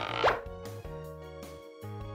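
Light children's background music, with a short sound effect that slides quickly upward in pitch about a quarter of a second in.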